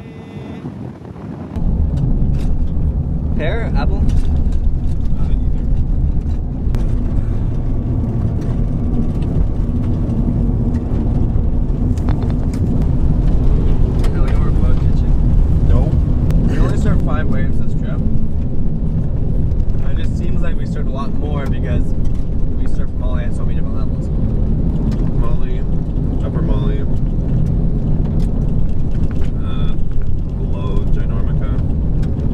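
Honda car driving on a dirt road, heard from inside the cabin: a loud, steady low rumble of tyres and engine that starts suddenly about two seconds in.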